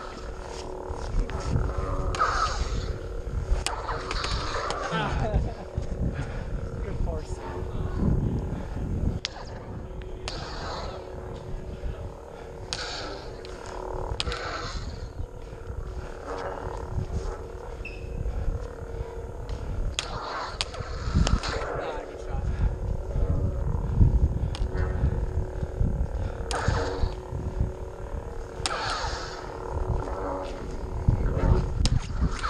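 Combat lightsabers' electronic sound effects: a steady hum with repeated roar-like swing whooshes that swell and fade every second or two, broken by several sharp clash cracks as the blades strike.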